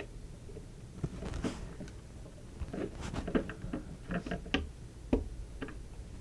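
Light, irregular clicks, taps and scrapes of fingers handling a small circuit board, feeling its board-to-board connector into place on a camera mainboard.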